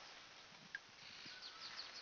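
Quiet outdoor hush with faint, quick high chirps of small birds in the second half and one short click about three quarters of a second in.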